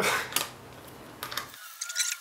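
A short laugh, then light metallic clicks and clinks of small hardware as nuts and washers are worked onto the bolts of a homemade camera rig and screwed down.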